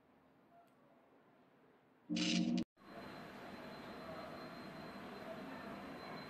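Near silence, broken about two seconds in by a brief half-second pitched sound that cuts off abruptly, followed by faint steady room hiss with a thin high whine.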